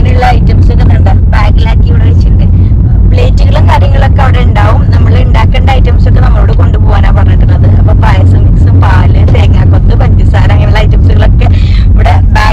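A steady low rumble of a car on the move, heard inside the cabin, with a person talking over it most of the time.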